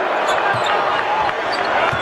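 Basketball dribbled on a hardwood court, a few low bounces over steady arena crowd noise.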